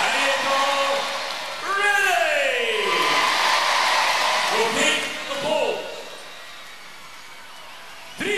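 Studio crowd cheering and shouting, with single voices calling out over the noise. The cheering dies away about six seconds in.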